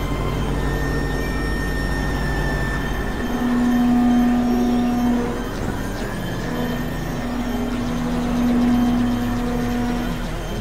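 Experimental electronic drone music: layered, held synthesizer tones over a low, steady, pulsing buzz. A strong low-middle tone swells in about three seconds in, drops out around five seconds, and returns from about six and a half seconds.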